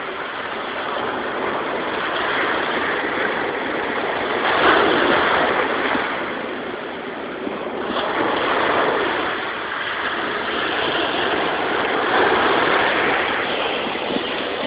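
Surf breaking on a beach: a steady rushing hiss that swells and eases every few seconds as waves wash in.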